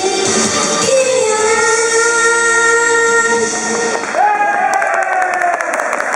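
Japanese idol pop: a group of young women singing over a recorded backing track, ending on a long held note. About four seconds in the backing track drops away and a voice calls out over hand claps.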